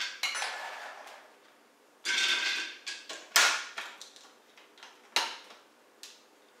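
Salted almonds rattling into the plastic bowl of a Cuisinart food processor in short bursts, with sharp plastic clacks as the bowl and lid are handled, two of them a couple of seconds apart. The motor is not running.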